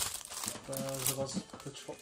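Packaging crinkling and rustling as it is handled, starting with a sharp click.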